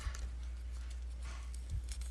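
Faint rustling of a paper strip being folded over on itself by hand, over a low steady hum, with a soft low thump near the end.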